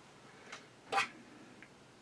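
Small metal clicks from sewing-machine parts being handled while a grub screw is started into the hook linkage: a light click, then a louder short clink about a second in, then a faint tick.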